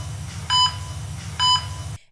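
Heart-monitor beep sound effect: a short electronic beep repeating a little under once a second, twice here, over a low droning bed.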